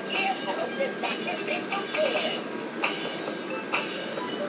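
Animated dancing snowman toy singing a Christmas song through its built-in speaker, with a few sharp clicks in the second half.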